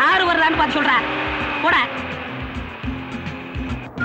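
A high-pitched voice talks animatedly for about the first two seconds. After that comes a quieter low engine rumble from a passing truck.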